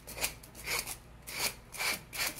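Fine-grit sanding block rubbed along the edge of an artboard in four quick strokes, about two a second, smoothing the trimmed paper edge so it blends into the board.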